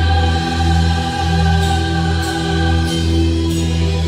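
Live rock band playing: long held chords over a steady low bass note, with cymbal hits coming in from about halfway through.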